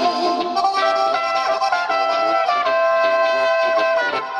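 Alpine folk band of the Oberkrainer line-up playing an instrumental interlude: trumpet and clarinet carry the melody, ending on a long held note, over an off-beat accompaniment of accordion, guitar and tuba.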